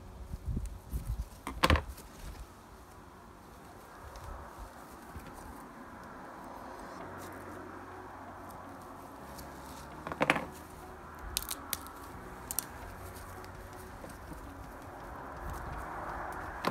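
Knife work on a plucked rooster carcass at a folding table as a wing is cut off at the joint: two sharp knocks, about two seconds in and about ten seconds in, and a few small clicks, over a steady low hiss.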